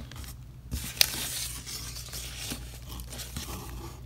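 Cardboard box and paper packing rustling and scraping as items inside the box are handled and a paper card is pulled out, with one sharp click about a second in.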